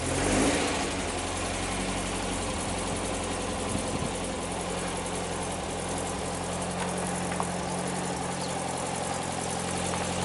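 A 1973 VW Bay Window campervan's air-cooled flat-four engine running at low revs as the van moves slowly off. There is a brief louder swell about half a second in, then a steady engine note.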